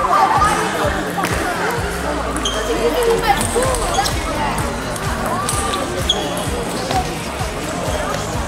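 Table tennis rally: the ball clicking sharply off the bats and the table, with shoes squeaking on the sports-hall floor as the players move.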